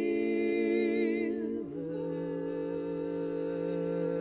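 Women's barbershop quartet singing a cappella in close four-part harmony, holding a sustained chord. About a second and a half in, the voices slide into a new, slightly softer chord and hold it.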